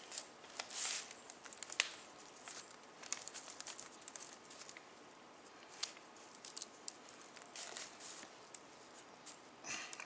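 Faint rustling and crinkling of paper with small scattered clicks as hands pull, loop and knot twine around a rolled pancetta lying on a paper sheet.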